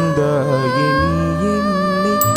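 A man's and a woman's voices singing a slow Tamil film song together in long held notes that glide from pitch to pitch.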